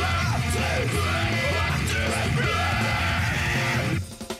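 Heavy metal band playing with yelled vocals over a steady pounding bass. The full band breaks off suddenly at the very end.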